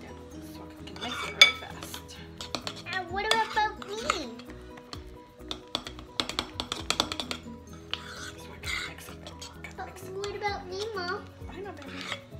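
A spoon clinking and scraping against a ceramic bowl as thick fluffy slime (glue, shaving foam and contact solution) is stirred, in repeated clusters of quick clicks.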